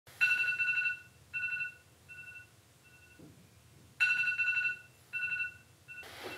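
Smartphone sounding a high electronic ringing tone: one long beep followed by three shorter ones that fade, the pattern starting over about four seconds in.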